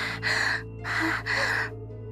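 A woman breathing heavily and fast, about four loud breaths in two seconds, in two pairs, with background music running underneath.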